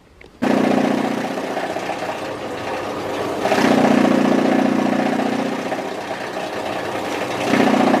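Belt-driven chaff cutter (straw and corn-stalk feed cutter) running steadily under load as straw is fed in, with its newly replaced drive belt. It cuts in abruptly about half a second in and gets louder for a stretch about three and a half seconds in and again near the end.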